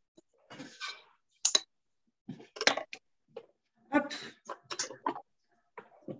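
Scattered clicks, knocks and brief rustles of kitchen containers and utensils being handled, in short separate bursts with dead silence between them, as video-call audio cuts out between sounds.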